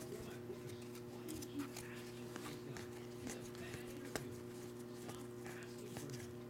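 Trading cards being handled and flipped through by hand: faint, scattered soft clicks and slides of card on card, over a steady low electrical hum.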